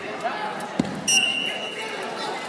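A single thump, then a short sharp referee's whistle blast of about half a second, over background voices in a large gym.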